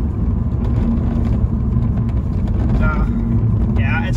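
Inside the cabin of a moving 2014 Mini Paceman diesel: a steady rumble of engine and road noise with a low, even hum.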